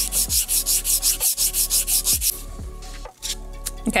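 Metal workpiece being hand-sanded with 220-grit sandpaper wrapped around a sanding block, wet with WD-40: fast back-and-forth scraping strokes at about six a second. About two seconds in they break off into a few lighter, scattered strokes.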